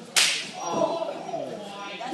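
A strike on bare skin in a wrestling ring, most like an open-hand chop to the chest: one sharp, loud slap about a quarter second in, followed by voices from the crowd.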